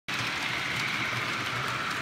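OO gauge model freight train running along the layout's track, making a steady running noise of wheels on rail and locomotive motor with a faint high hum.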